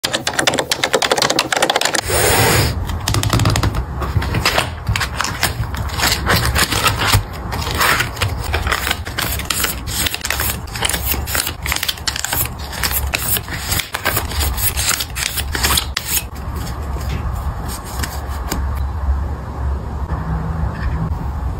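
Close-miked fingernail taps and clicks on a plastic ring-bound photocard binder, with plastic card sleeves rustling as its pages are flipped. It is a dense, irregular run of small clicks over a low steady hum, thinning out near the end.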